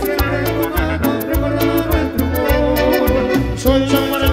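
Live Peruvian cumbia (chicha) band playing, with a steady beat of sharp percussion over pulsing bass and a melodic lead line.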